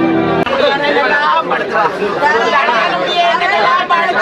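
Several mourners wailing and crying aloud over the body, many overlapping voices rising and falling in pitch. They cut in abruptly about half a second in, replacing a short stretch of soft string music.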